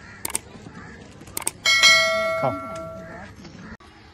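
Subscribe-button overlay sound effect: a couple of mouse clicks, then a bright notification bell ding that rings out for about a second and a half.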